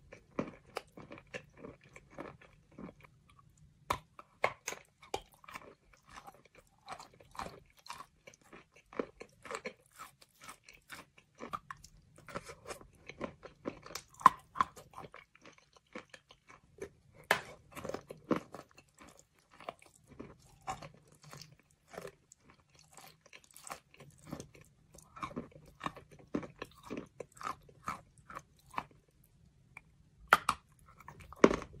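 Close-miked crunching and chewing as a piece of white chalk coated in thick brown paste is bitten and chewed: irregular crisp crunches, several a second, with brief pauses.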